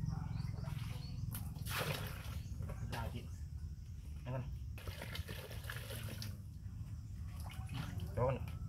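Water splashing and pouring into a plastic basin in several separate bursts, over a steady low hum.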